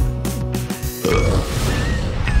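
A song's final music rings out and stops under a second in. About a second in, a fire in a stone fireplace catches, lit from a match, with a sudden rush of noise, and thin whistling tones follow.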